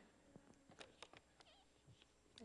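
Near silence with faint handling noises: a few soft clicks about a second in and a brief wavering squeak, as a plastic water bottle is picked up.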